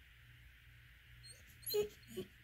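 A dog giving one short, pitched whine near the end: a complaint at the petting stopping.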